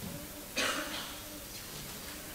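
A person coughs once, sharply, about half a second in, followed by faint throat and voice sounds.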